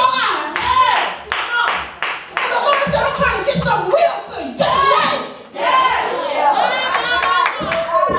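Hands clapping irregularly among loud, excited voices: a preacher shouting and a congregation calling back.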